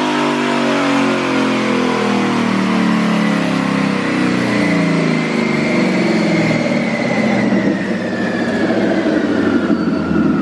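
Twin-turbocharged Ford 5.0 Coyote V8 of a 2019 Mustang GT making a pull on a chassis dyno: the engine note climbs steadily for about six seconds, then falls away as it winds down on the rollers. A whine rises and falls with it.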